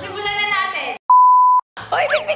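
A single edited-in censor bleep: one high, steady pure tone about half a second long, set in a gap where the sound is cut to silence, right after speech.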